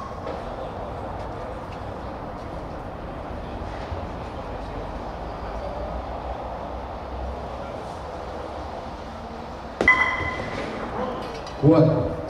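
A bowling ball strikes the wooden bolos about ten seconds in, a single sharp knock with a short ringing clack, knocking a pin down. It stands over a steady low background noise in the bowling hall.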